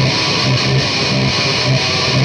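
Epiphone SG electric guitar being played: quick, evenly repeated low notes with chords over them.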